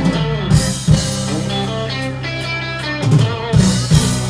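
Live ska band music: electric guitar and drum kit over sustained low bass notes. Drum hits with cymbal crashes come about half a second in and again near the end.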